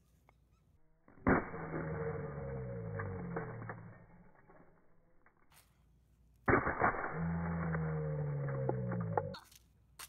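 A sledgehammer smashing a gingerbread house, heard twice in slowed-down playback: a sharp hit about a second in and another past six seconds. Each hit is followed by deep, drawn-out sounds that slide down in pitch.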